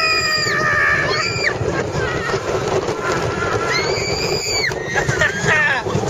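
Riders screaming on the Steel Eel steel roller coaster: one long high-pitched scream in the first second or so and another about four seconds in, over a steady rush of wind and ride noise.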